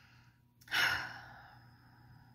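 A woman sighs, a single breathy exhalation about half a second in that fades away over about a second.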